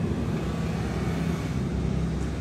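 Steady low rumble of road traffic passing close by.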